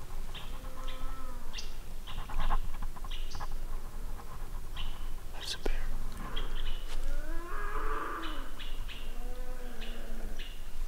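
Cow elk mews: short nasal calls that rise and then fall in pitch, repeated several times, with short high chirps over them and a sharp snap about halfway through.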